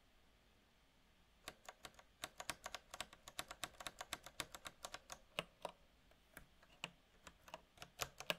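Typing on a computer keyboard, mostly the same key struck over and over: a quiet second and a half, then a quick run of keystrokes lasting about four seconds, thinning to a few scattered key presses near the end.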